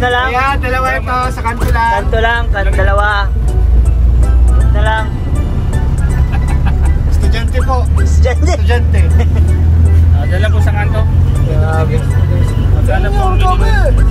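A vehicle engine drones low under the passenger cabin, heavier and a little higher in pitch through the middle as the vehicle pulls, with small rattles from the body. Voices ride over it in the first few seconds.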